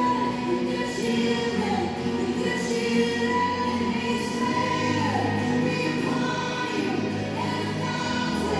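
Music with a choir singing sustained, held notes.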